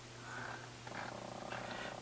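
Quiet, low steady hum with faint soft sounds over it from about the middle on.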